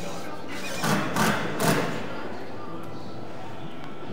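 Three thumps close together about a second in, from a metal-skinned foam wall panel being pushed and knocked into place by a crew, over a steady workshop background.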